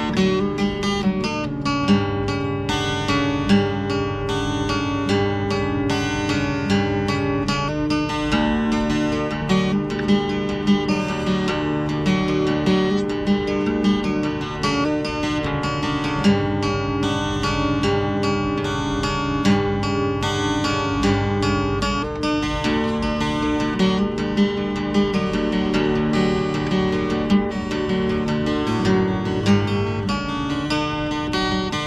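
Solo cutaway acoustic guitar played by hand: a steady flow of picked notes over ringing bass notes, with no singing.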